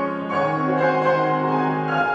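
Grand piano playing ringing, bell-like chords over a held low bass note, with new chords struck about half a second and a second and a half in.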